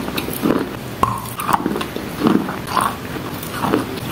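Wet chalk being chewed: a run of crunching bites, roughly two a second, each with small sharp cracks as the damp chalk breaks between the teeth.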